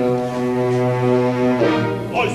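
Opera music: one long low note held for about a second and a half, then a change to new notes near the end.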